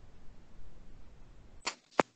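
Low rumbling noise on an open microphone, as from handling or breath, then two sharp clicks near the end.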